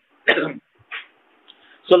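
A man's voice in a pause of his talk: a short vocal sound and a brief throat clearing between words, then his steady speech resumes near the end.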